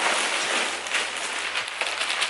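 Large carrier bag rustling and crinkling as it is handled and lifted: a dense, uneven crackle.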